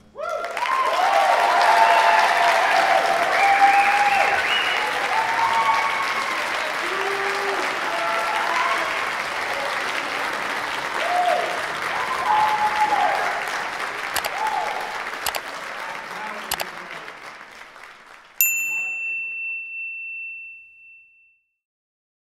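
Concert audience applauding and cheering, with whoops over the clapping. The applause thins out after about 16 seconds and fades away. Near the end a short, high-pitched tone sounds suddenly, then dies away.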